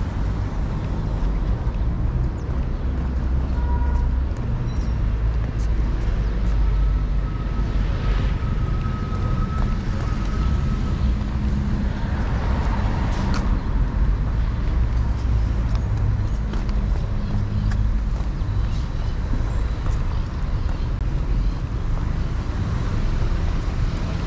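City street ambience: a steady low rumble of road traffic, with a vehicle passing about twelve seconds in.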